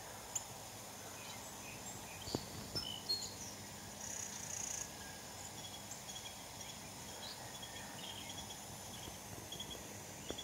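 Faint garden ambience: a steady hiss, with the sprinkler watering the garden, and scattered short, high chirps and a few brief ticks.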